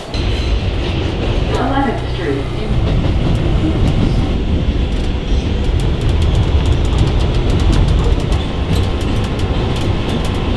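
New York City subway train running, heard from inside the car: a steady, loud low rumble with sharp clicks and rattles from the wheels and car in the second half.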